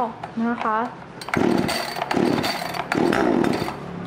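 Three pulls on the recoil starter of a Kanto KT-CS1700 two-stroke chainsaw with the choke on, each a rasping drag of the cord turning the engine over. The pulls purge air from the fuel system before starting. After the third pull a low, steady engine note carries on near the end.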